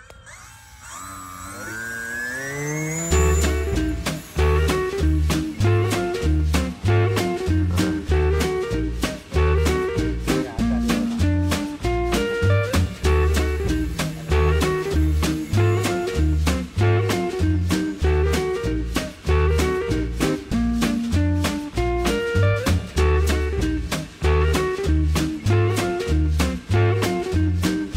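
A brushless electric motor and 9x4.5 propeller spooling up as the throttle is opened, a whine rising in pitch for about three seconds. Upbeat swing-style background music with a steady beat then takes over.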